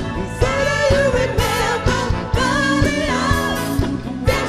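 A band playing: a singer holding wavering notes over electric guitar and drums keeping a steady beat.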